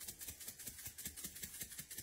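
Spice shaker being shaken: a faint, rapid rattle of about ten clicks a second.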